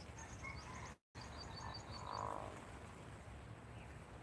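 Faint outdoor animal calls: a quick run of high chirps just after a brief cut-out in the audio about a second in, then a short, lower call a little after two seconds, the loudest sound.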